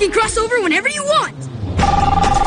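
A young girl's high cartoon voice in a quick run of swooping, sing-song exclamations that stop about a second and a half in. Near the end a steady electronic tone starts after the cut to the train.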